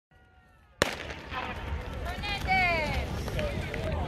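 Outdoor track-meet ambience: a sharp click about a second in, then a voice calling out in a long falling shout over background chatter and a steady low rumble.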